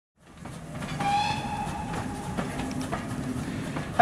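A train fading in with a steady running rumble; about a second in, a train whistle blows for about a second.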